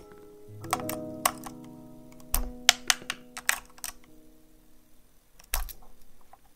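About ten irregular sharp plastic clicks from the keys of a LOFREE 1% transparent mechanical keyboard with Kailh Jellyfish switches, over soft background music with held notes.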